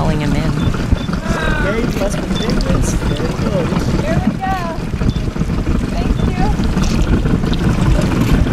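Steady low rumble of a boat and wind on the microphone, with indistinct voices of people aboard talking.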